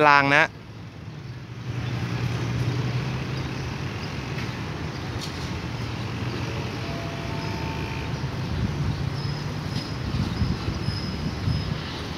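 A State Railway of Thailand THN diesel railcar approaching from a distance: a steady low engine drone under a constant rushing noise that comes up after the first couple of seconds.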